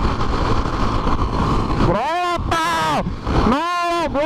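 Motorcycle riding at highway speed, with wind rushing over the microphone. About halfway through, a person lets out two long drawn-out shouts whose pitch rises and falls.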